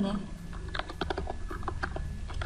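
Typing on a computer keyboard: a quick run of about eight to ten keystrokes in the second half.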